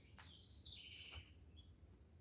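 Faint chirping of small birds: a handful of short, high chirps in the first second or so, over a quiet low background hum.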